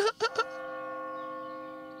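A clock-tower bell strikes once about half a second in and rings on, fading slowly, as the clock strikes the hour. A short voice sound comes just before the strike.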